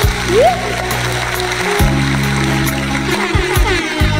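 Instrumental backing music of a Tagalog ballad playing between sung lines. Sustained low chords change about two seconds in and again near the end, with a short rising slide about half a second in and a light beat.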